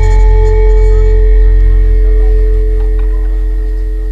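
Large gamelan gong ringing out after a stroke. Its deep hum and a few steady higher tones fade slowly.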